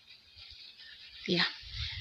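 Mostly faint, uneven low rumble of wind buffeting the microphone, then a woman says a single "yeah" about a second and a half in.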